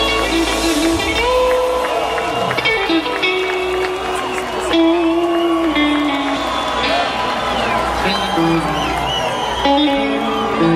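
Live band playing between songs: electric guitar notes and sliding bends over a deep bass drone that stops about a second in, with a crowd cheering.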